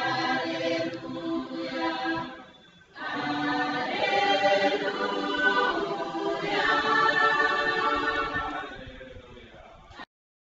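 A choir singing a liturgical chant in two sung phrases. There is a brief break about two and a half seconds in, and the second phrase dies away near the end.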